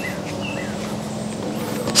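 A bird calling a few short, high notes, each a quick falling two-part call, over a steady low hum.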